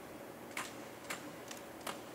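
Four faint, sharp clicks at uneven intervals of about half a second, from a ceremonial rifle being handled during a guard's weapon inspection.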